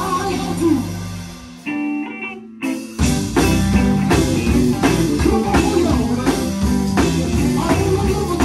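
Live gospel band with singers playing loud, driving music. About a second and a half in, the bass and drums drop out, leaving a few held chords. Around three seconds in the full band kicks back in with a steady drum beat.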